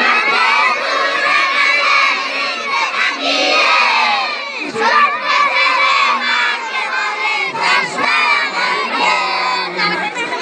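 A crowd of children shouting together, many high voices overlapping at once.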